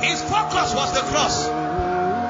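A voice over background music, with one long held note.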